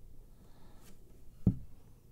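Quiet handling of an acoustic guitar as the fretting hand shifts to a new position on the neck, with a faint click and then one short low thump about one and a half seconds in.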